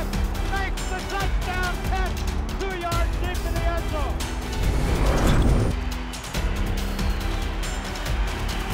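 Excited voices from the game broadcast for the first few seconds, then a whoosh that swells and falls away about five seconds in, leading into a held music bed for a graphics transition.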